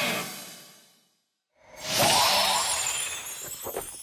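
Cartoon background music fades out over the first second. After a brief silence a bright, noisy transition sound effect swells in sharply and fades away over the next two seconds.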